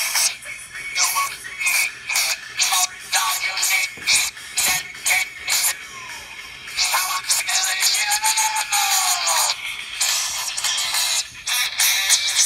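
A song with singing played through the small built-in speaker of a Bluetooth fidget spinner: thin, with almost no bass.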